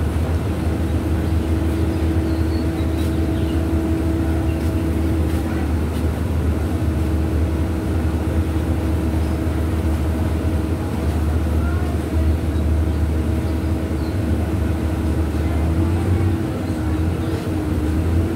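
A steady low mechanical drone with a constant pitched hum above it, running evenly without change.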